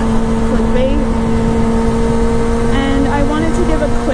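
The inline-four engine of a 2006 Kawasaki ZX-6R 636 running at a steady cruising speed, an unchanging engine tone under heavy wind noise on the helmet microphone.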